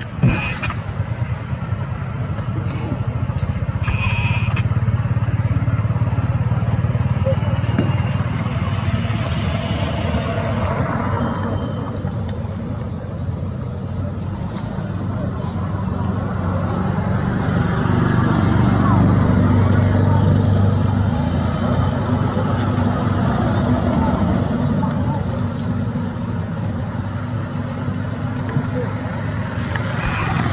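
A steady low engine drone, like passing motor traffic, with people's voices in the background. It swells to its loudest about two-thirds of the way in, and there is a sharp click right at the start.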